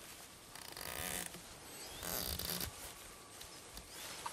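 Schmidt & Bender PM II riflescope elevation turret turned by hand, ratcheting through its 0.1 mil click detents in two quick runs of rapid clicks, the first about half a second in and the second about two seconds in.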